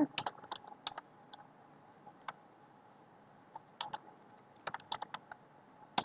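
Computer keyboard typing in short bursts of keystrokes separated by pauses of a second or more.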